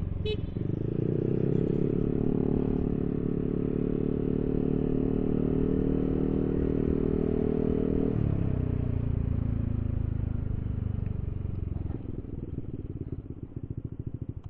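Yamaha Aerox 155 scooter's single-cylinder engine, breathing through a 3Tech Ronin Hanzo aftermarket exhaust, pulling steadily under throttle for about eight seconds. Then it falls in pitch as the throttle closes and the scooter slows, dropping toward idle near the end.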